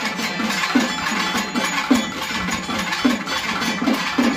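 Traditional temple-festival drumming: a low drum note that falls in pitch repeats about two to three times a second, over a dense clatter of percussion.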